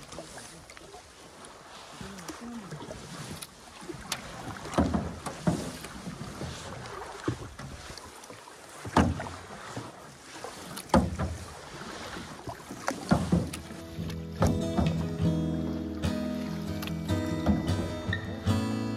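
Canoe being paddled on calm lake water: paddle strokes splashing and dripping every couple of seconds, with water moving along the hull. About 14 s in, background music with acoustic guitar comes in over it.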